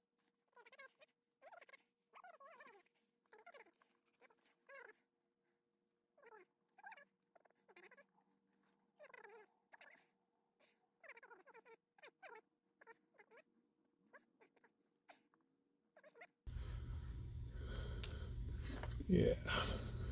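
Faint, short voice-like sounds with gliding pitch, coming and going with silence between them. About three-quarters of the way through, a louder steady low hum and hiss suddenly sets in, with a few sharp knocks near the end.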